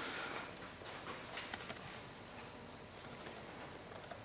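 A few laptop keyboard keystrokes, a quick burst of light clicks about a second and a half in and one more later, over a steady hiss.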